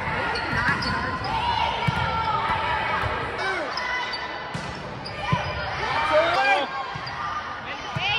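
Volleyball being played on a hardwood gym floor: a few sharp ball hits and bounces, with short sneaker squeaks, over players' shouts and chatter echoing in the hall.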